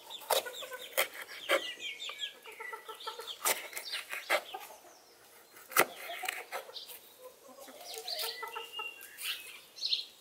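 Kitchen knife slicing a green bell pepper on a wooden cutting board: sharp, irregular cuts through the pepper onto the board, the loudest about six seconds in. Chickens cluck throughout.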